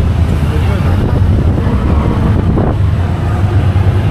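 Auto-rickshaw (tuk-tuk) engine and road noise heard from inside the cab while it drives through traffic: a steady low rumble, with some wind on the microphone.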